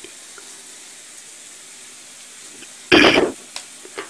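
Potatoes and onions sizzling steadily in hot oil in a kadhai, with one short, loud burst of noise about three seconds in.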